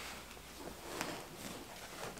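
Quiet rustling of a person shifting on a bed, with a faint tap about a second in.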